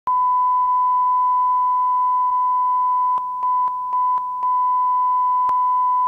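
Steady thousand-cycle line-up tone playing under broadcast colour bars. A few seconds in it briefly dips several times with clicks, and there is one more click later.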